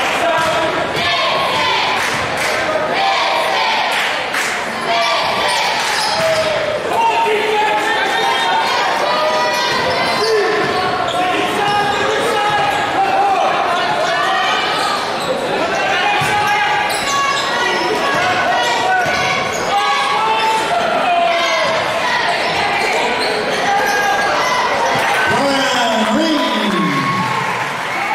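Basketball bouncing on a hardwood gym floor during a game, with many voices of the crowd and players going on throughout, echoing in a large gymnasium.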